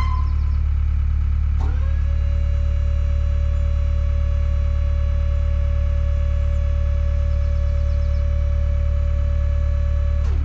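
A large engine running steadily with a heavy low rumble. About a second and a half in, a whine rises quickly in pitch, holds one steady note, then drops away at the end.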